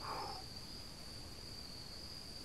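Crickets chirring in a steady high-pitched chorus, with a short breathy sound just at the start.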